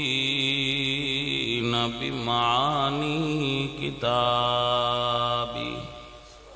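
A man chanting Arabic in a drawn-out melodic recitation, amplified through a microphone, with long held notes and a wavering run about two seconds in. A long held note near the end fades out.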